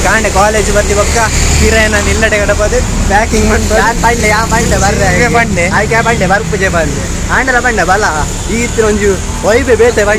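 Men talking excitedly, with the low engine rumble of road traffic behind them, strongest in the first four seconds.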